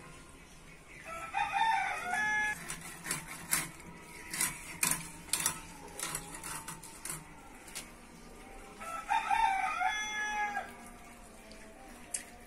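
A rooster crows twice, once about a second in and again about nine seconds in, each crow lasting about a second and a half. Between the crows comes a run of sharp clicks and knocks from the fish being cut on the boti blade.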